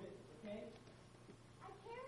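A faint voice speaking in short phrases, one near the start and one near the end, over a steady low hum.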